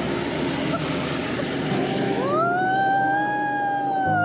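Hot air balloon's propane burner firing, a steady roar that fades out about two seconds in. A high held tone then rises in and holds to the end.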